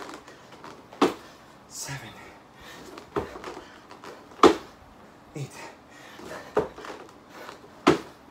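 Hands and feet landing on foam floor mats during burpees: about six knocks at uneven intervals, the loudest about halfway through, with short hard breaths between them.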